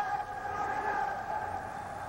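A single steady horn-like tone held for nearly two seconds, over the hall's background noise.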